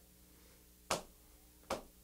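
Two sharp taps keeping time, about 0.8 s apart, counting in the beat for an a cappella song.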